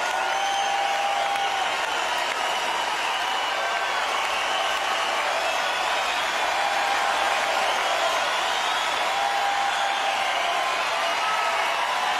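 Large arena crowd cheering and applauding steadily, with short shrill whistles rising above the noise now and then.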